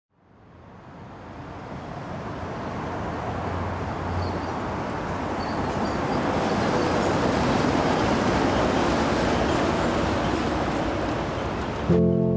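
Seattle Center Monorail train approaching along its elevated concrete beam, a steady rushing roar mixed with city traffic noise. It fades up from silence over the first few seconds and grows louder toward the middle.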